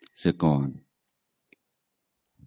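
A man's calm voice speaks a short phrase of meditation instruction through a microphone, then falls silent, with a single faint click about a second and a half in.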